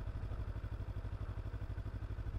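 Kawasaki Z300's parallel-twin engine running steadily at low revs, a low, even pulsing note.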